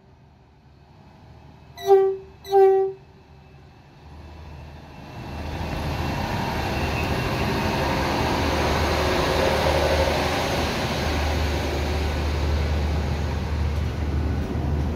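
Two short train horn toots about two seconds in, then a Hitachi Blues regional train moving off past the platform: the rumble of its wheels and drive builds over a couple of seconds and then runs steadily.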